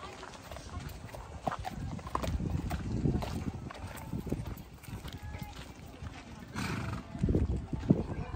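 A pony's hooves stepping and shifting on gravel and sand, with scattered short clicks, over people talking in the background.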